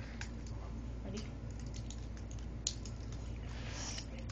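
Scattered small plastic clicks and rattles of Lego parts being handled and fitted together, with one sharper click about two-thirds of the way through.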